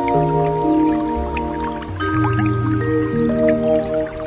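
Background music over the opening credits: chords of long held notes that change about every two seconds, dotted with short drip-like plinks.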